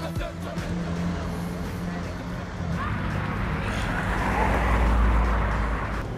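Road traffic: car engines running and tyre noise on a tarmac road, building to a louder low rumble as a vehicle passes close about four to five seconds in.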